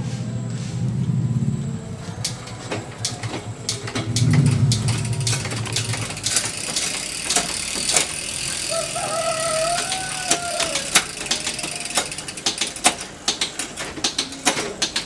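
Mountain bike's Shimano SLX 12-speed drivetrain turned by hand: chain running over the cassette and chainring, with many irregular sharp clicks. A low rumble swells twice in the first six seconds.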